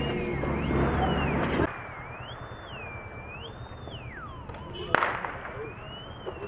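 Mine detector's warbling tone, rising and falling in pitch about once a second as it is swept over rubble. A loud rough noise stops abruptly before two seconds in, and there is a sharp click about five seconds in.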